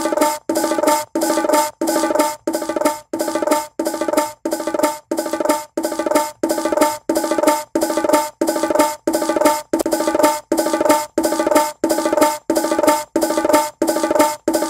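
A soloed bongo part, separated by AI from a sampled drum loop, playing on loop as a steady, evenly spaced pattern of short pitched hits. It is being shaped with saturation and transient adjustment.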